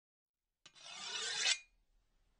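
A rasping, scraping noise that swells for about a second and then stops abruptly.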